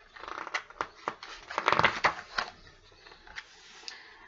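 Paper rustling and crinkling as a large picture-book page is turned by hand, with a few sharp clicks, loudest about two seconds in and fading to a faint rustle near the end.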